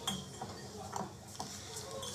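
Bar-room clinking of glasses and tableware: a few small sharp ticks and clinks about half a second apart over a low background hubbub.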